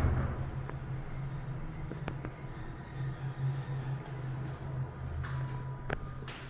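Kone EcoSpace machine-room-less traction elevator car travelling, heard from inside the cab: a steady low hum with a faint high whine, and a couple of light clicks.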